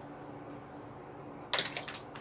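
Quiet steady low background hum, with a short hissing rustle about one and a half seconds in.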